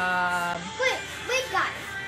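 A boy's voice holding a long steady "ahh" that stops about half a second in, followed by a few short vocal sounds sliding up and down in pitch.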